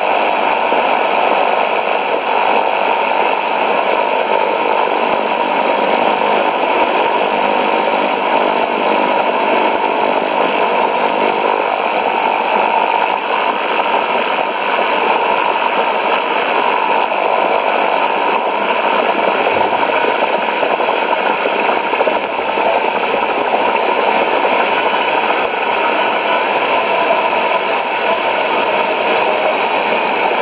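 Steady shortwave static from a Sony ICF-2001D receiver's speaker, tuned to 11830 kHz AM: an even hiss with the station's signal too weak to make out.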